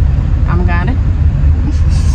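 Steady low road and engine rumble inside a moving car's cabin, with a brief voice about half a second in.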